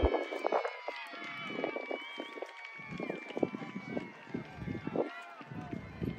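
Several voices calling and shouting across a soccer field during play, overlapping with one another at a distance.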